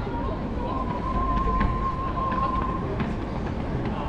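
Pedestrian shopping street ambience: a steady low rumble of city noise with scattered clicks. A thin steady high tone is held from just after the start to about three seconds in.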